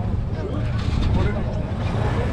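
Voices of people in a crowd talking, over a steady low rumble.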